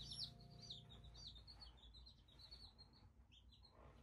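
Baby chicks peeping: a faint, quick run of short, high chirps, each one sliding down in pitch.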